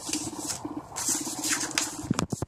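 Paper rustling and scraping against a desk as loose sheets are handled, in a run of short scratchy bursts.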